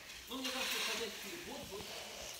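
A soft rustling hiss of the Christmas tree's branches and needles being moved, fading after about a second, under faint voices.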